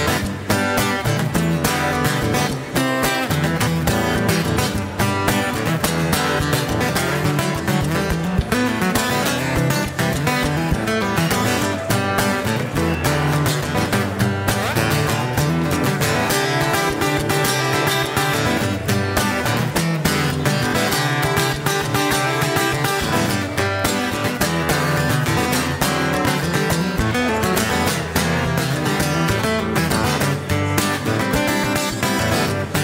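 Acoustic guitar strummed steadily through an instrumental break in a live acoustic song, with no singing.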